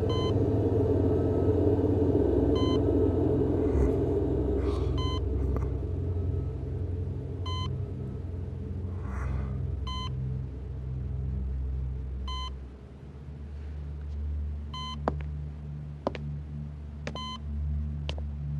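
A hospital patient monitor gives short electronic beeps at a slow, steady pace, about one every two and a half seconds, over a low rumbling drone that fades about two-thirds of the way through. A few sharp clicks come near the end.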